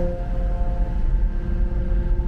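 Steady low engine rumble with a faint, steady hum over it, heard from inside a van cabin on a ferry's enclosed vehicle deck.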